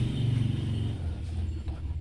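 A low, steady mechanical hum with a faint rumble, dropping lower in pitch about a second in.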